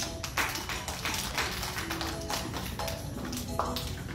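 Young children clapping along to a recorded children's song during a break with no singing, with the music's tones running underneath.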